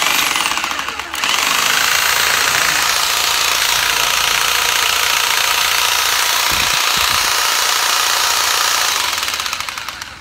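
Makita 100 V electric hedge trimmer running, its reciprocating blades chattering loudly and steadily, with a brief dip about a second in and the motor winding down near the end. The blade bar is not quite straight, which the seller says makes it noisier; bent back straight, it runs quieter.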